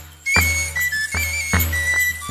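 Background music: a high piped melody stepping between notes over a steady beat of about two and a half strokes a second and a low bass. It drops out for a moment at the start and comes back about a third of a second in.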